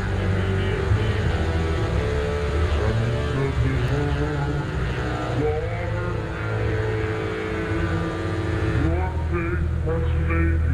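Layered soundtrack: a steady low rumbling drone with overlapping pitched tones and voice-like sounds sliding upward in pitch, about five and a half seconds in and again near the end.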